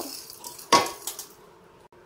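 Fried moong dal being tipped from a pan into a metal pressure cooker, a short rattle of grains falling, then one sharp metallic clank as the pan knocks against the cooker about three-quarters of a second in.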